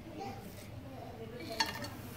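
A steel bowl clinks once against a pressure cooker about one and a half seconds in, as whole spices are tipped into the heating oil, with a faint background voice.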